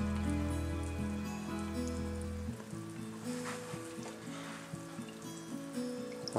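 Background music, with a faint scratchy hiss of a magnetic algae cleaner being slid across the curved glass of a bottle aquarium. A low bass note in the music drops out about halfway through.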